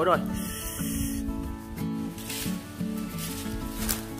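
Background acoustic guitar music, with two bursts of hissing from apple snails sizzling on a wire grill over a wood fire, and a few faint crackles.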